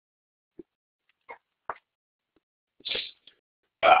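A few faint mouth clicks and breaths from a hoarse man, then one short, sharp burst of breath from his mouth and nose about three seconds in.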